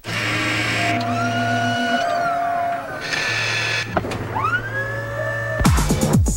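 Electronic music and sound effects from a TV commercial's soundtrack: hissing sweeps and synthesizer tones that glide up and down over a steady low hum, with a fast electronic beat starting near the end.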